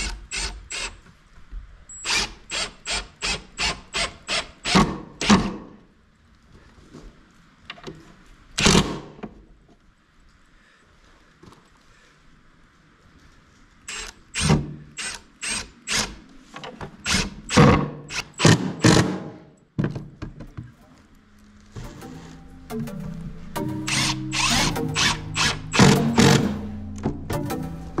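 Cordless drill-driver driving screws into plywood in rapid short pulses of the trigger, in two runs of about three pulses a second with one longer run between them. Background music comes in near the end.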